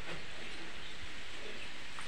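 Steady outdoor background hiss with no distinct sound events.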